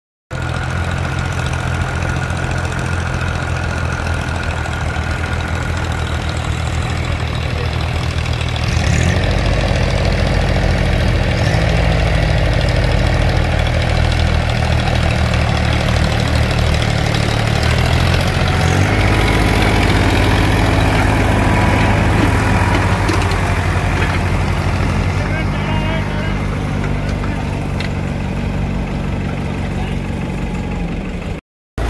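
Diesel farm tractor engine running steadily under load while pulling a spring-tine cultivator through soil. It grows louder about a third of the way in and its note shifts again about two-thirds of the way through.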